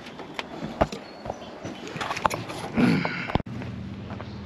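Irregular light knocks and clicks, with a brief voice sound about three seconds in; the sound cuts off abruptly just before the end.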